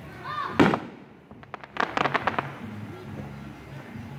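Aerial firework shell bursting with one loud boom about half a second in. About a second later comes a quick run of sharp crackling pops.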